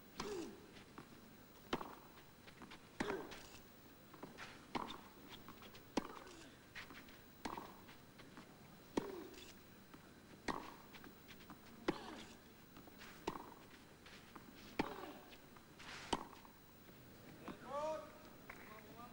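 A tennis rally on a clay court: about a dozen crisp racket-on-ball hits, one every second and a half or so, faint as heard through the TV broadcast.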